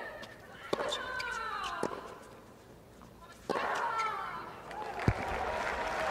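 Tennis rally: racket strikes on the ball every second or so. Twice, about a second in and again halfway through, a woman player gives a long, falling grunt with her shot.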